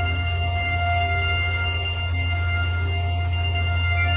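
Synthesized ambient music from a PlantWave biodata sonifier wired to mushrooms, played through a small speaker: several long held notes over a steady low drone. The notes follow the changing electrical signal picked up from the mushrooms.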